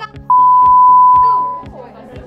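A single loud, steady beep of one pitch, lasting about a second and a half and starting a moment in: an edited-in censor bleep over the speech.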